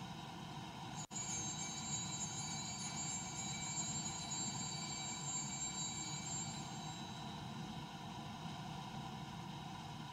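Small altar bell rung once about a second in, its high, clear ring fading away over several seconds: the bell that marks the elevation of the host at the consecration. Low steady church room tone beneath it.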